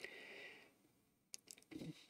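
Near silence at a close microphone: a soft breath at the start, then a few faint small clicks and a short quiet intake of breath before speech resumes.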